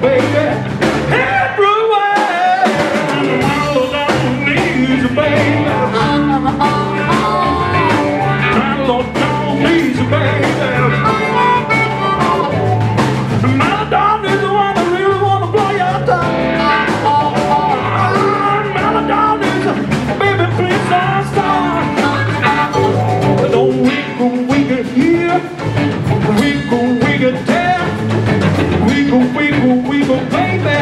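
Live blues band playing a steady groove: electric guitars, electric bass and drum kit.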